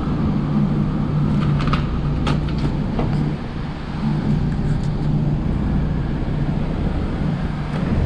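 HVAC blower fan running with a steady low hum, with a few light plastic clicks and knocks a couple of seconds in as hands work inside the open unit.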